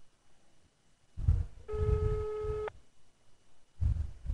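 Telephone ringback tone from a mobile phone: one steady beep about a second long, the called line ringing with no answer yet. A low thump comes just before it.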